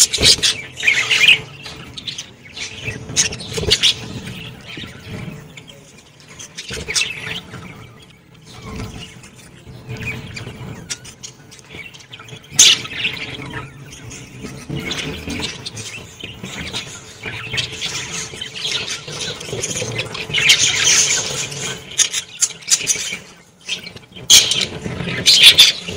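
A group of budgerigars chattering and chirping, with short sharp squawks breaking in now and then; the chatter is busiest about twenty seconds in.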